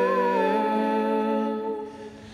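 A vocal trio of young women singing a held chord in close harmony through microphones. The chord shifts just after the start, then the notes fade away near the end.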